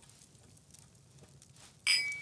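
Faint room tone, then two cut-glass tumblers clinked together once near the end, with a short bright ring that dies away quickly.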